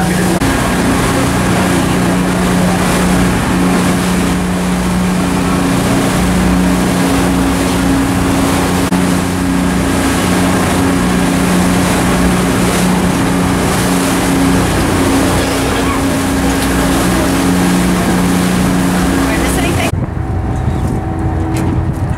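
A passenger boat's engines running steadily underway, a low droning hum under the loud hiss of wind and rushing water from the wake. Near the end the sound cuts to a duller mix with much less hiss.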